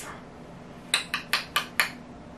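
Five quick, sharp clicks or taps, about four a second, starting about a second in.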